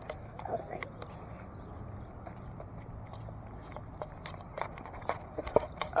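Scattered light clicks and knocks of fingers handling the camera, more of them in the last couple of seconds, over a faint steady low background.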